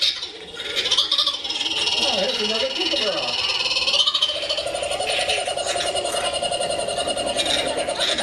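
A parrot calling: scratchy, high squawks in the first half, then one long, rapidly pulsing, croak-like call held on one pitch through the second half.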